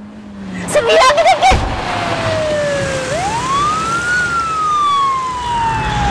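A car crash: a short screech and crash about a second in, ending in a heavy impact. Then an emergency-vehicle siren wails, dipping, rising to a peak, then falling slowly.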